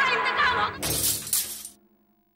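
Music with a wavering melody is cut off about a second in by glass shattering: two sharp crashes, the glass of a framed picture breaking, ringing briefly before fading away.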